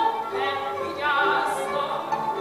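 A Hungarian nóta, a folk-style song, sung with a live string band of violins and double bass.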